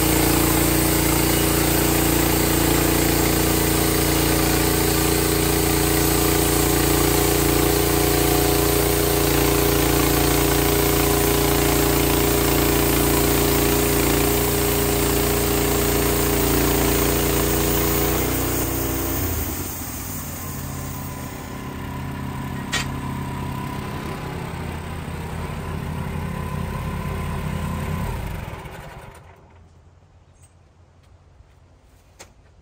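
Wood-Mizer LX55 portable band sawmill running loud and steady as its blade cuts a slab from a cypress log. A little past halfway the sound falls off as the cut ends, and the engine runs on more quietly, with one sharp click. The engine shuts off near the end.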